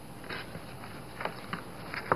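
Faint scraping of a rotary cutter's blade through fabric-covered cardboard along a small ruler, with a few soft rustles of handling.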